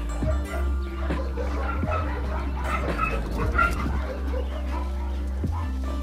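Background music, with a dog giving several short, high-pitched cries about two to four seconds in.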